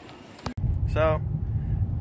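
A faint background hum for about half a second, then an abrupt switch to the steady low rumble of engine and road noise heard inside a car's cabin while it is driving.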